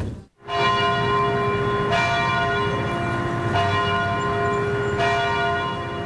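Church bells ringing: a new strike about every one and a half seconds, each ringing on under the next. The ringing starts about half a second in, after a brief silence.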